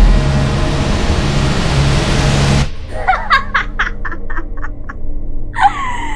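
A dense, noisy swell of cinematic sound effects with a low hum cuts off abruptly about two and a half seconds in. A woman then laughs: a quick run of short 'ha' bursts that fade away, then a louder laugh near the end.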